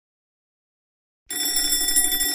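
Silence for about a second, then an electric school bell starts ringing, a steady rattling ring.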